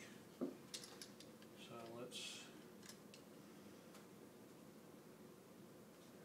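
Faint metallic clicks and a short scrape from an Allen wrench and hand tools being worked on a mini lathe's motor-mount screws, a few in the first half, then near silence.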